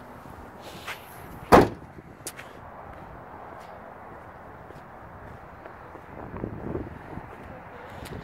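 Rear liftgate of a 2015 Lincoln MKC SUV shutting with a single sharp slam about one and a half seconds in, a small click just before it.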